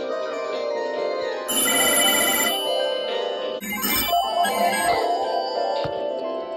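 Several telephones ringing at once, their electronic ring tones and melodic ringtones overlapping. A louder, rapidly trilling ring sounds for about a second near the start.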